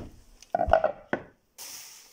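Small painted panels handled and set down on a wooden floorboard floor: a knock at the start, a louder cluster of clatters about half a second in, another knock a moment later, then a brief rustle near the end.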